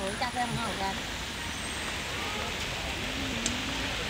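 Steady background noise of road traffic on wet roads, with faint voices.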